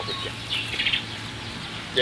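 A bird chirping briefly about half a second in, over a steady low hum.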